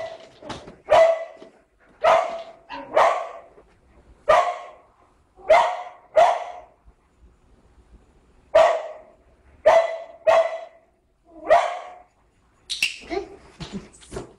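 Springer spaniel barking over and over, single sharp barks about a second apart, with a pause of a couple of seconds midway.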